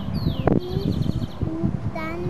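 Young children's voices outdoors, with a couple of high falling chirps near the start and a quick high trill just after, over a low rumble of movement and handling noise.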